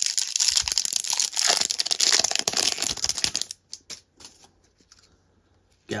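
A Topps Stadium Club baseball card pack's crimp-sealed wrapper being torn open and crinkled for about three and a half seconds, followed by a few light rustles as the cards are handled.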